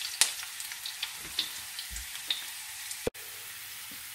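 Sliced garlic browning in hot olive oil in a nonstick frying pan: a quiet, steady sizzle with scattered small crackles and pops.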